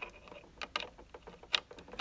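Screwdriver turning out a small screw that holds a power-supply circuit board in its plastic housing: a few faint, irregular clicks.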